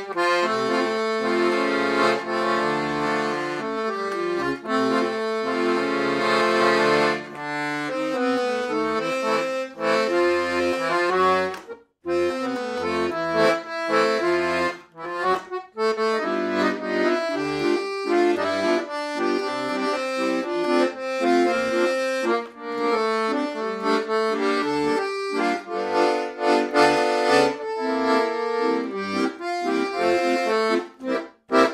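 Silvio Soprani 120-bass piano accordion played as a tune, right-hand notes over bass accompaniment, its two treble reed sets (low and middle) tuned dry, without tremolo. It opens with held chords, breaks off briefly about twelve seconds in, then continues with quicker notes.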